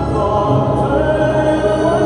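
Figure skating program music with choral singing in long held notes, played over the rink's sound system.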